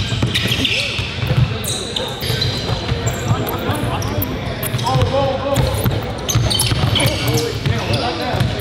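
A basketball being dribbled on a hardwood gym floor, repeated low bounces, with short high sneaker squeaks as players cut and drive. Players' voices carry around the echoing gym, loudest in the middle.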